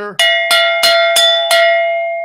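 A Moscow mule mug struck five times in quick succession like a bell, about three strikes a second, each strike ringing out with a clear metallic tone that lingers and fades after the last.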